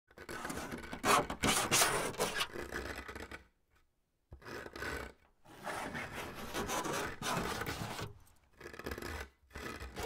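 Fingernails scratching in rough, noisy strokes, in several bouts broken by short pauses.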